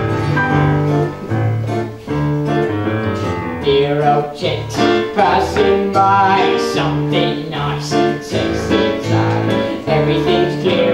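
A stage-musical song: young cast voices singing over a keyboard-led pit band, with a bouncing two-note bass line.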